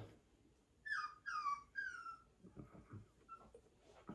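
Maltese puppy whining: three short, high, falling whines in quick succession about a second in.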